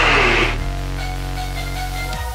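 Background music: held electronic chords over a steady bass, shifting to a new chord about half a second in.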